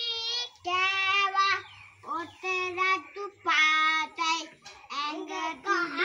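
A young boy singing unaccompanied: a string of held notes broken by short pauses for breath.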